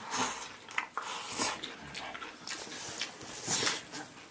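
A man eating noisily from a bowl of rice and pork with chopsticks: several short, loud mouth noises as food is shoveled in, with chewing between them; the loudest comes about three and a half seconds in.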